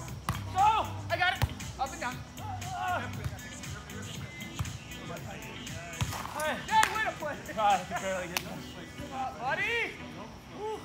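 Beach volleyball rally: a few sharp smacks of hands hitting the ball, about 1.5, 6 and 8.5 seconds in, amid voices and background music.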